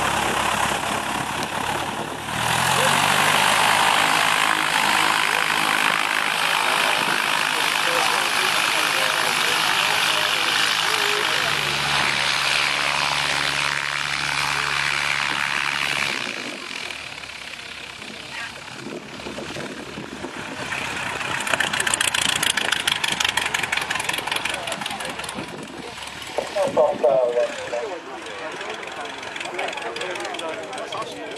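Single-engine light aircraft piston engines and propellers: a Cessna 172 Skyhawk's four-cylinder engine running steadily as it taxis on grass for about the first half, its note stepping up twice. After that, other light aircraft are quieter, with a louder rush of engine and propeller noise swelling and fading in the second half.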